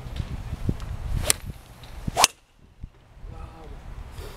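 Iron club striking a golf ball off a driving-range mat: a sharp crack about two seconds in, the loudest sound, just after a brief swish. A second sharp strike comes about a second earlier.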